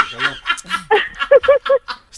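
Laughter in short bursts, with three quick, evenly spaced laughs a little after the middle.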